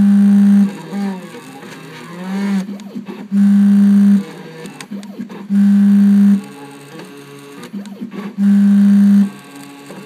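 Stepper motors of a small CNC engraving machine driving the cutter through a pattern in clear plastic. They give a pitched whine that slides up and down as the cutter follows curves. Four times the whine becomes a loud, steady low hum lasting most of a second, on the straighter moves.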